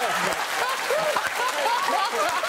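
Studio audience and guests laughing and applauding together: many overlapping laughing voices over steady clapping.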